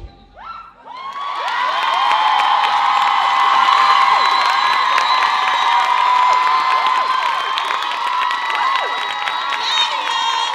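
Music cuts off, and about a second later an audience breaks into loud cheering, full of high-pitched shouts, that builds quickly and stays loud.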